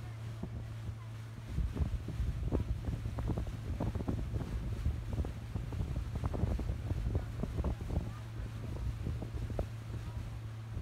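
Motorboat engine running with a steady low hum while towing, with gusty wind buffeting the microphone aboard the moving boat; the buffeting picks up about a second and a half in.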